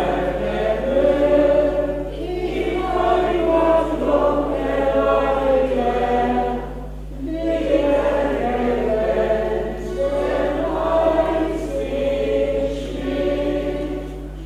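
An elderly man singing a folk song to his own diatonic button accordion, the reeds and voice going in phrases of a few seconds with short breaks between them, over a low steady electrical hum.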